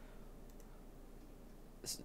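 A single computer mouse click near the end, pausing video playback, over faint room tone with a couple of fainter ticks about half a second in.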